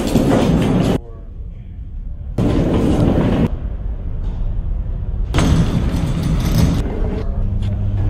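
Three bursts of loud rumbling noise, each about a second long and starting and stopping abruptly, with quieter stretches between; a steady low hum sets in near the end.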